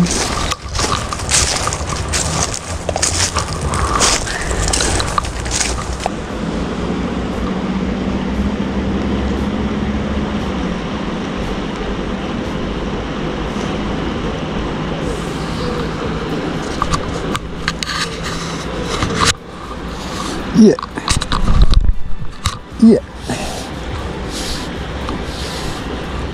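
Footsteps crunching over dry fallen leaves and gravel for the first few seconds, then a steady outdoor rush of river and wind on the camera microphone. A few sharp knocks and rustles come near the end as the fly rod and line are handled.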